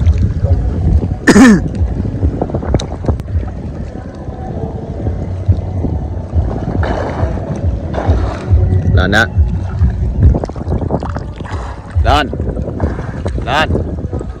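River water sloshing and splashing close to the microphone, with low wind rumble on the microphone. Short shouts cut in a few times.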